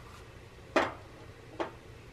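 A small plastic container set down into a plastic cart tray: one light knock a little under a second in, then a fainter one shortly after.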